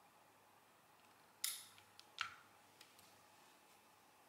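Two sharp metallic clicks about three-quarters of a second apart, with a few faint ticks around them: the mechanism of a 1960s–70s Monforts industrial counter clicking as its printing lever is moved.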